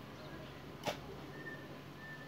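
A digging hoe chopping into the soil once, about a second in: a single sharp strike in a repeating rhythm of strokes.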